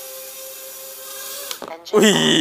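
HGLRC Rekon 3 nano quadcopter's brushless motors and propellers humming steadily as it comes down to land, cutting out about one and a half seconds in.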